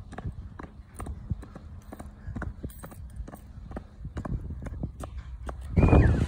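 A toddler's shoes tapping on a concrete footpath, an uneven patter of small steps at about three a second.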